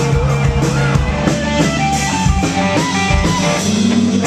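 Indie rock band playing live, with electric guitar, keyboard and drum kit.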